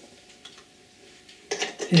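Quiet room, then near the end a few short clicks and knocks of a cable lead being handled and plugged into a bench timing instrument.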